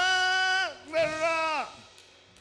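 A singing voice holding two long, high, sustained notes, the first running over a second. Each note slides down in pitch as it ends, in gospel style.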